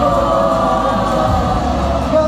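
Music with many voices singing together in long, held, choir-like lines, heard in a large arena.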